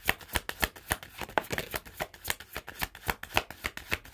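Tarot deck being shuffled by hand: cards slapping and flicking against each other in quick, irregular clicks, several a second.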